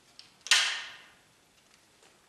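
Umarex T4E HDS68 .68-calibre, 12-gram-CO2-powered paintball/pepperball marker firing a single shot about half a second in: a sharp pop with a gassy tail that dies away within about a second. A couple of light clicks from handling come just before.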